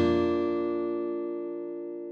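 Intro music: the last strummed chord on an acoustic guitar ringing out and slowly fading.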